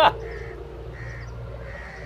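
Two faint crow caws, short and rough, about half a second and a second in, after a man's brief exclamation at the very start, over a steady low hum.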